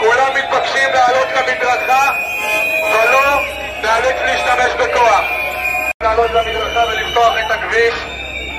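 A crowd of protesters chanting loudly in unison, in repeated phrases with some notes held.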